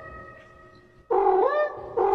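A cat meowing: a drawn-out meow that holds its pitch and fades away, then after a short pause a shorter, wavering meow.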